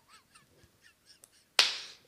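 Stifled laughter: faint, high, wheezing squeaks, then about one and a half seconds in a sudden loud, breathy burst of laughter that fades quickly.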